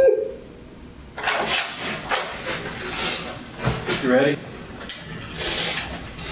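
Rustling and shuffling noises from people moving in a small room, with the room's door opening as someone comes in. A short wavering voice sound about four seconds in.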